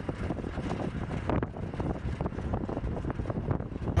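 Wind buffeting the microphone: an uneven, gusty rumbling noise.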